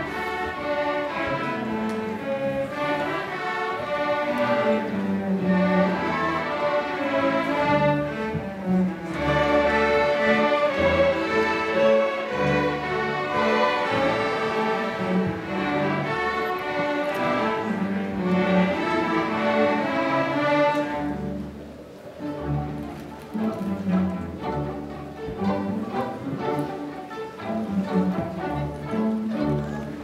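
Student string orchestra playing, violins over cellos and double basses. About two-thirds of the way through, the music drops to a quieter passage of shorter, more detached notes.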